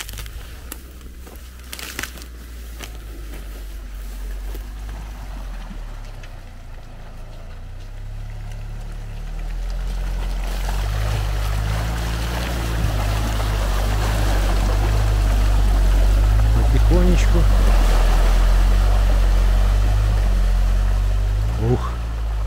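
ATV engine working under load as the quad bike pushes through a deep, water-filled peat mud hole, with water and mud churning and splashing around the wheels. The engine grows louder from about halfway through and is loudest near the end.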